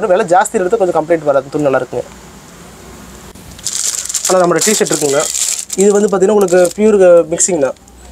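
Clear plastic packaging crinkling as a shirt in its polythene packet is handled, starting about halfway through and lasting about two seconds. A man talks over most of it.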